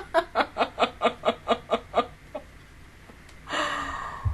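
A woman laughing hard in rapid breathy pulses, about five a second, that die away after about two seconds. A long breathy sound follows near the end.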